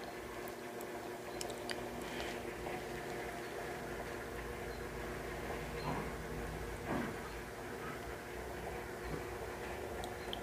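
Steady low electric hum of a small motor-driven display turntable turning the model tractors, with a couple of faint taps about six and seven seconds in.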